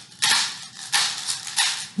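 Small plastic bottle filled with paper clips shaken as a homemade maraca, about three short rattling shakes.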